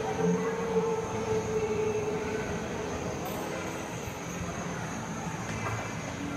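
Busy indoor mall hubbub with a steady held tone lasting about two seconds near the start.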